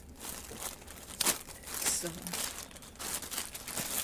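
Plastic packaging crinkling and rustling as it is handled, with a sharp crackle about a second in.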